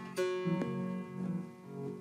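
Acoustic string-band music in the closing bars of a song: a strummed rhythm guitar with plucked notes ringing, fresh strums coming in now and then.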